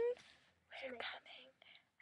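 Faint whispering: a few short breathy words about halfway through, with quiet gaps around them.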